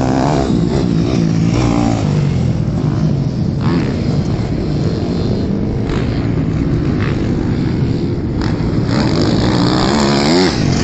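Several dirt bike engines running together, their pitch rising and falling as the riders accelerate and ease off.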